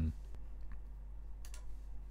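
A few faint computer mouse clicks over a low steady hum, as a software menu is opened.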